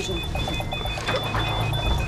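Hospital patient-monitor alarm beeping in a quick, steady pattern, over background music and a low hum.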